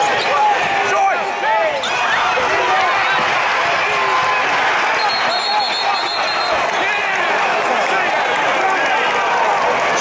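Basketball game sound in an arena: crowd noise with sneakers squeaking in short chirps on the hardwood court and a ball bouncing. A steady high referee's whistle sounds about five seconds in, as play stops for a scramble over a loose ball.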